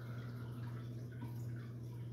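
Steady low hum of an aquarium air pump, with the faint bubbling and dripping of a sponge filter's air-lift in the tank.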